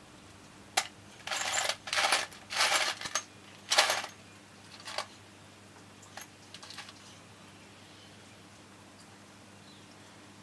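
Steel bolts and nuts clinking and rattling in a metal biscuit tin as a hand rummages through them. There is a single click, then four rattling bursts over about three seconds, then a few lighter clinks.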